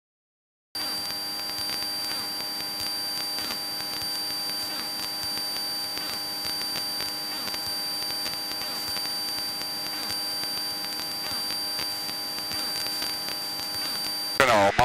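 Steady cabin noise of a Cessna 172 in cruise flight: the engine and propeller drone with an even rush and a steady high-pitched whine. It starts after a brief dropout of silence under a second in.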